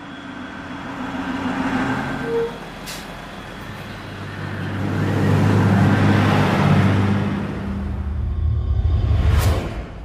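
City bus driving up to a stop, its engine growing louder over the first several seconds, with a short burst of hiss near the end.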